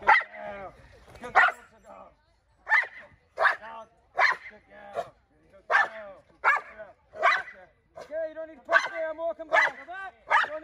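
A protection-trained dog barking repeatedly at a helper in front of it, about one bark every three-quarters of a second, the barks coming closer together near the end.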